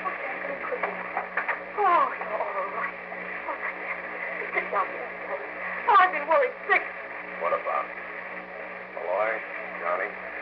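Voices speaking on an old, band-limited radio broadcast recording, coming in short bursts, over a steady hum and hiss.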